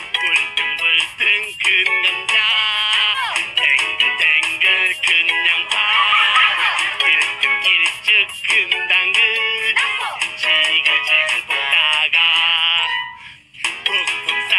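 A Korean children's song about jjajangmyeon, sung by a man and a children's choir over upbeat backing music, with a brief pause near the end.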